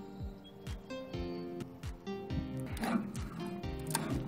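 Background music: sustained synth notes over a steady, deep kick-drum beat.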